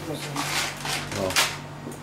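Dry rice poured from a plastic packet into a metal sieve: a granular hiss in two short rushes, with the packet crinkling.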